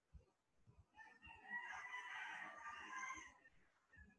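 A rooster crowing once, faintly, a single drawn-out call of about two seconds starting about a second in.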